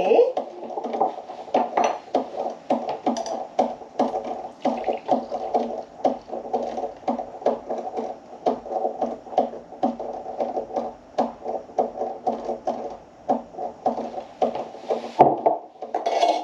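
Espresso machine running with a steady pulsing hum and rapid faint clicks, which cuts off shortly before the end.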